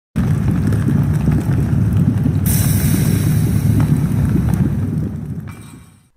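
Cinematic logo-intro sound effect: a loud, deep rumble with crackling, a bright hiss joining about two and a half seconds in, the whole thing fading out near the end.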